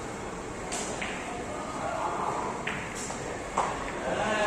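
Carom billiard shot: a cue tip striking the ball and the ivory-hard balls clicking against each other, about five sharp clicks spread out, the loudest just before the end.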